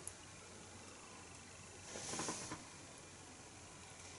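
A person sipping and tasting beer from a glass: mostly quiet room tone, with one soft breathy hiss about two seconds in.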